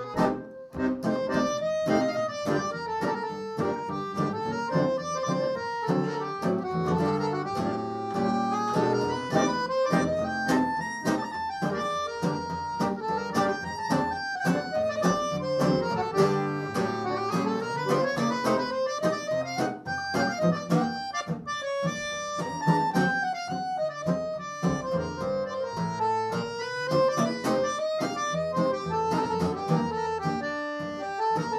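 Live tango played on accordion and acoustic guitar, with the accordion's melody over guitar chords that mark a steady beat.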